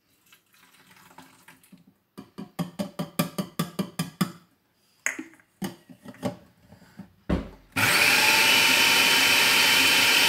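Countertop food processor switched on with a thump about seven seconds in, its motor and blade then running loud and steady with a high whine as it blends chickpeas with lemon juice. Earlier, a quick run of short pulses.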